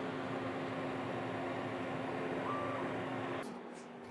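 Monport 40-watt CO2 laser cutter running a cutting pass on cardboard: a steady whirring hum from the machine, with a short higher whine about two and a half seconds in. It cuts off suddenly shortly before the end.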